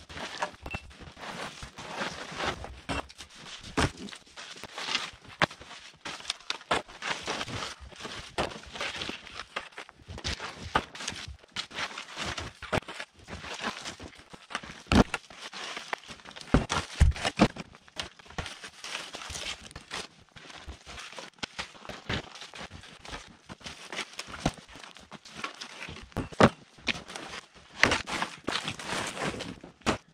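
Wooden sawmill slab boards clattering and knocking irregularly as they are pulled from a snow-covered pile and stacked, with footsteps crunching in deep snow between the knocks.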